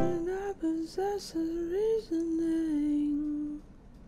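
A single female voice singing unaccompanied: a few short notes with small slides in pitch, then one longer, lower held note that fades out about three and a half seconds in. It is one plain vocal line with no doubling.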